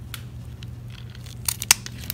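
Scissors snipping, a quick cluster of three sharp clicks about a second and a half in, the last the loudest: cutting the flower stalks off a Haworthia succulent.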